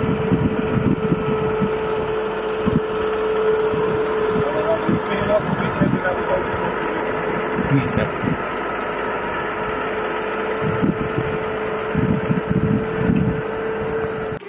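New Holland tractor running in a grass silage clamp, a steady whine held throughout over the engine, with wind buffeting the microphone in irregular low gusts.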